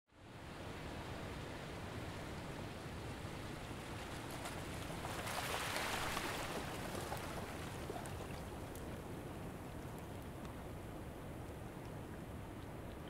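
Steady rushing noise of sea water and wind, swelling a little about five to six seconds in, with a few faint clicks.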